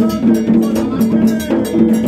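Gagá music played live: quick, even metallic percussion strokes over sustained low tones held for about half a second each.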